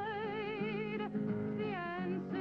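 A woman singing long held notes with a wide vibrato over a low, steady accompaniment; the note breaks about a second in, and a new note slides down near the end.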